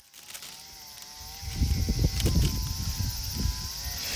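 Wind buffeting the microphone: an irregular low rumble from about a second and a half in, easing off near the end. It is gusty enough to trouble the flame lighting the incense.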